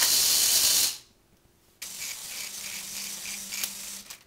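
Electric motors of a K'nex claw machine running: a loud hissing whir for about a second, a short pause, then from about two seconds in a steadier hum with a low tone and an even pulsing as the claw carriage travels sideways.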